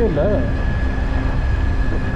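Steady low rumble of a moving vehicle's road and wind noise with a constant thin whine, as it drives along a paved hill road. Laughter sounds over it in the first half second.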